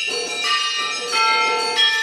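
Tuned metal bells struck one note at a time, each note ringing on with bright overtones, about three new strikes roughly every half second.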